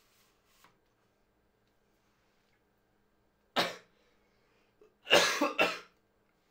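A man coughing: one cough about three and a half seconds in, then two more in quick succession near the end.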